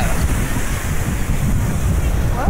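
Wind buffeting the microphone in a loud, uneven rumble over the steady rush of surf breaking on the shore.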